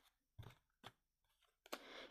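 Near silence with a couple of faint clicks, from tarot cards being handled and laid down on a cloth-covered table.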